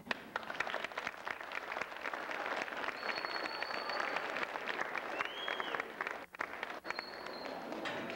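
An audience applauding, with a few high whistles on top.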